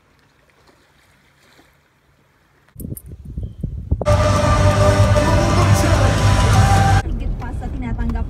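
Faint sound for the first few seconds, then low rumbling from about three seconds in. About four seconds in comes loud live concert music with the crowd, which cuts off abruptly three seconds later to the steady noise of a moving vehicle.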